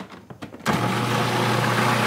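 Cuisinart food processor motor switched on about two-thirds of a second in and running steadily with a low hum as it grinds.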